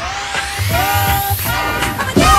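Bassline house dance music: a rising noise sweep builds over a repeated synth note that slides up into each hit and a deep bass line, topping out about three quarters of the way through.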